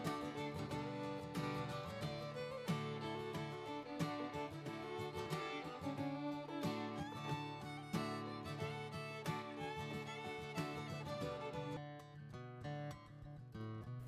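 Background music: a light string-instrument tune with many short plucked notes.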